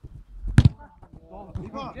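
A football striking the wire mesh fence around an artificial-turf pitch: one sharp, loud thwack about half a second in, after a shot that has missed the goal.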